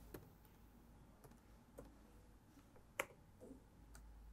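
Faint, sparse keystrokes on a laptop keyboard: a few scattered clicks, one louder tap about three seconds in.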